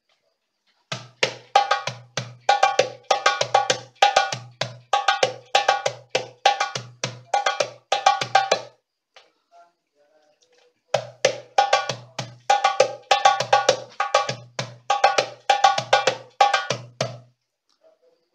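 Darbuka played with the hands: a quick lesson rhythm of deep, booming strokes and sharp, crisp strokes, played through twice with a pause of about two seconds between the two runs.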